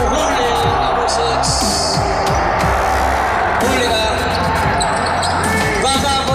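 Basketball game sounds in a large indoor arena: a ball bouncing on the hardwood court over a loud, steady background of voices and music.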